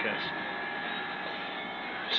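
A small room air conditioner running: a steady, even blowing hum with faint steady tones under it.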